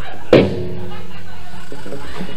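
Live band stage sound between songs: a single sharp thump about a third of a second in, then a steady held pitched note from the amplified band gear.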